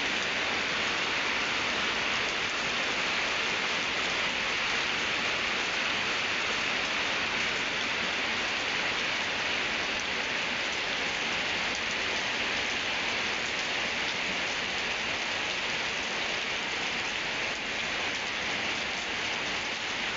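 Steady rain falling on a wet concrete yard and its puddles, an even hiss that holds at the same strength throughout.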